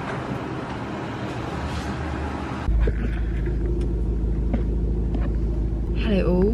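A hissy background of room noise, then from about three seconds in a steady low rumble inside a parked car's cabin with the car's engine idling.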